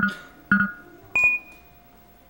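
Quiz-show electronic sound effects for the true/false answers: two short beeps about half a second apart, then a higher chime that rings on for most of a second over a softer held tone.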